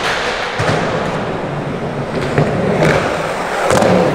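Skateboard wheels rolling with a steady rumble, with a few sharp knocks of the board, one about midway and a couple near the end.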